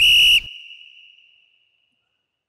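A single short, high whistle tone, about half a second long, that stops sharply and leaves a fading ring of about a second.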